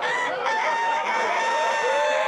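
A long, high crowing call: a short rising note, then about half a second in a held tone that slowly sinks, over a crowd laughing and chattering.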